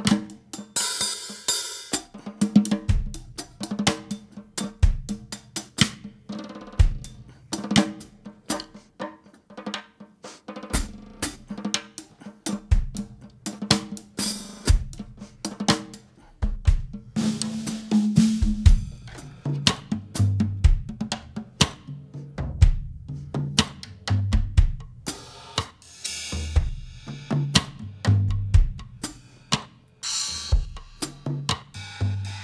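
Acoustic drum kit played with sticks: busy snare and tom phrases with cymbal crashes and hi-hat over bass drum. There are cymbal washes about a second in and again near the end, and low tom notes dominate the second half.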